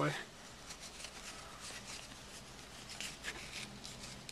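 Faint handling noise: a plastic lens-cap holder being worked onto a nylon camera strap, with soft rubbing and a few small clicks.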